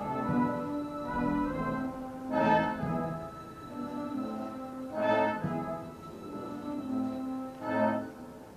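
Massed military bands playing slow, brass-led music, with three loud chords swelling up about every two and a half seconds.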